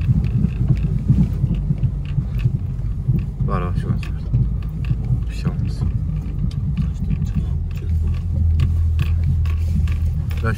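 Car driving slowly over a ploughed field, heard inside the cabin: an uneven low rumble from the car jolting over rough ground, with the engine's hum becoming steadier in the last couple of seconds.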